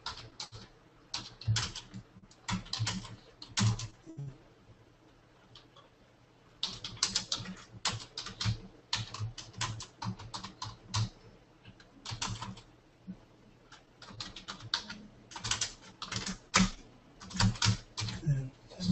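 Typing on a computer keyboard: runs of quick keystrokes, broken by a pause of about two seconds roughly a quarter of the way in.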